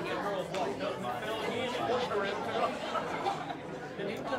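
Chatter of many people talking at once: overlapping conversations among a church congregation before the service gets under way.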